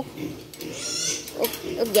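Wild boar giving a short breathy grunt about halfway through, with a woman's voice briefly near the end.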